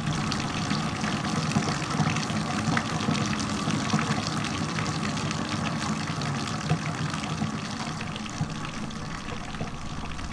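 Water running steadily, a continuous rushing noise with fine crackles throughout and a faint low hum underneath.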